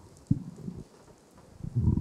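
Microphone handling noise: a sharp thump, a few softer bumps, then a louder dull rumbling knock near the end, as a live microphone is moved or handed on.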